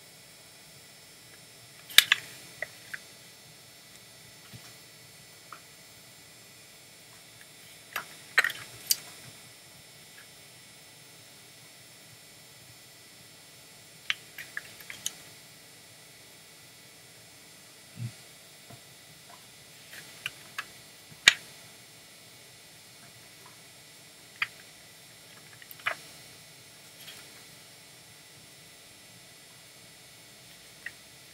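Pages of a paper passport booklet being turned and handled: short, sharp paper flicks and snaps every few seconds over a steady hiss.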